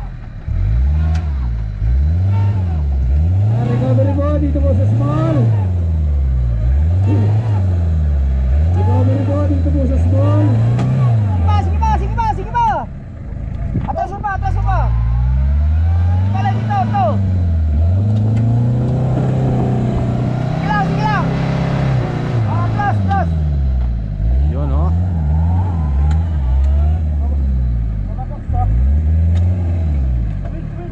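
Off-road 4x4's engine revving hard in repeated short bursts about a second apart as it climbs out of a deep dirt pit. Partway through it holds high revs for several seconds, then goes back to short bursts, with people's voices over it.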